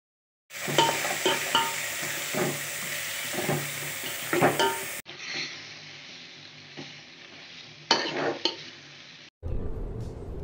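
Chicken pieces in masala sizzling in a metal pot while being stirred, with the spoon knocking and scraping against the pot several times. About halfway through, the sizzle turns quieter and duller, with a couple more knocks later on.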